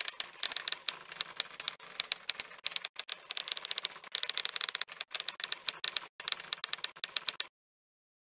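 Typewriter sound effect: rapid, irregular clacks of keys striking, typing out text, which stop suddenly near the end.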